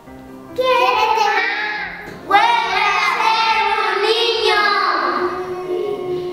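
Children singing a song over instrumental accompaniment: one sung phrase begins about half a second in and a louder one just after two seconds.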